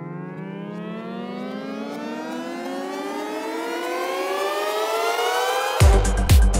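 Electronic dance music build-up: a synthesizer riser glides steadily upward in pitch and swells louder, then the kick drum and hi-hats drop in just before the end.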